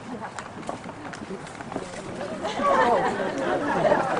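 Crowd of guests chatting, many overlapping voices, swelling louder about halfway through. A few scattered claps come near the start.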